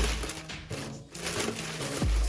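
Clear plastic wrapping crinkling as it is handled, easing off about a second in and then picking up again, over background music.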